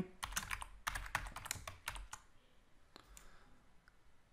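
Typing on a computer keyboard: about two seconds of rapid keystrokes as a project name is entered, then a lone click or two.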